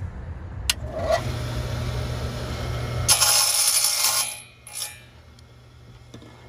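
Small benchtop table saw running, with a sharp click just under a second in; about three seconds in its blade cuts through a carbon fiber tube for about a second, loud and noisy, and then the level drops away.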